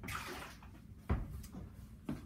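Countertop handling noise: a short rushing, splash-like noise, then a sharp knock about a second in and a softer one shortly after.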